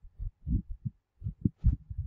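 A run of soft, irregular low thumps, about eight in two seconds, with a faint click near the end.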